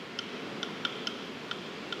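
A steady soft hiss with irregular short, sharp ticks, about six in two seconds.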